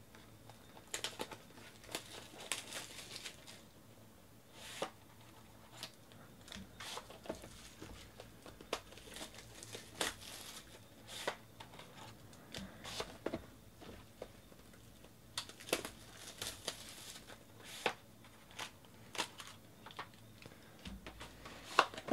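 Hands handling and opening cardboard trading-card boxes and their plastic wrapping: irregular crinkling, tearing and rustling with small clicks and taps of cardboard.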